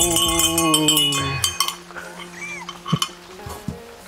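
A short sound-effect sting with bell ringing: high jingling and falling tones over a low beat. It cuts off about a second and a half in, leaving a few faint clicks and a brief laugh.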